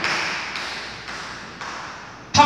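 A pause in speech: an even hiss fades steadily, broken by a light tap at the start and another about a second and a half in.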